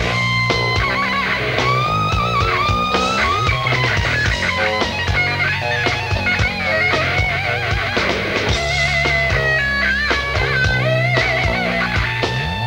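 Groove metal band playing live: a distorted electric guitar lead with bends and wide vibrato soars over chugging rhythm guitar, bass and pounding drums.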